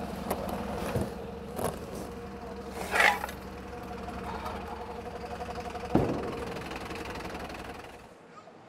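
A truck engine idling steadily, with the knocks and scrapes of big cardboard boxes being handled on a sack truck; a sharp thump about six seconds in is the loudest moment.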